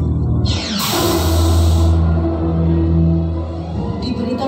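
Cinema film soundtrack music played loud: a falling whoosh sweeps down about half a second in, over a low held chord that carries on steadily.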